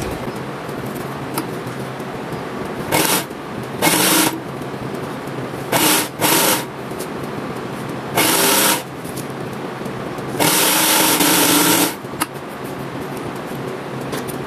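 Industrial sewing machine run in six short stop-start bursts, the last and longest lasting about a second and a half, as knit fabric is stitched; its motor hums steadily between bursts.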